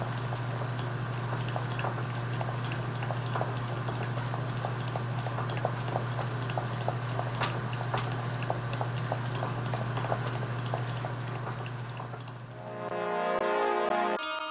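A steady low hum with a faint hiss and scattered light crackling clicks; about twelve and a half seconds in it gives way to music with clear notes.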